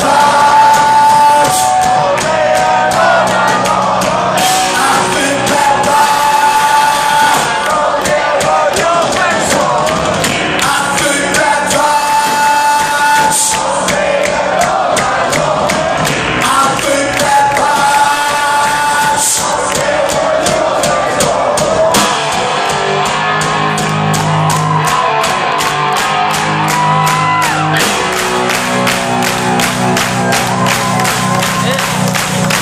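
A rock trio playing live at full volume in a large hall, heard from within the crowd: electric guitar, bass guitar and drums. In the last third the bass grows heavier under a steady driving beat.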